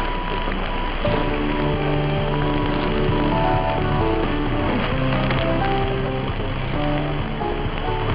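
Music on NHK Radio 2, received on 747 kHz mediumwave AM over a long distance, heard through a steady hiss of static and with the muffled, narrow sound of AM reception. Held notes change every half second or so and come in more strongly about a second in.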